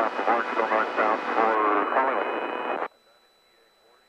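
Talk heard through the aircraft's radio and intercom, thin with no low end, cutting off suddenly about three seconds in to near silence.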